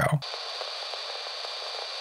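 Steady hiss of filtered noise, like radio static, with nothing in the low register and a faint high whistle running through it; it begins just as a word ends and holds level throughout.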